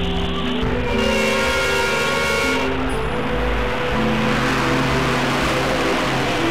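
Background music with held, steady notes, under the noise of a bus driving past on the road. The road noise starts about a second in and cuts off abruptly just after the end.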